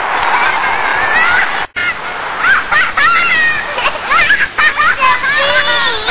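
Children shouting and squealing over a steady rush of running water, with a brief dropout in the sound a little under two seconds in.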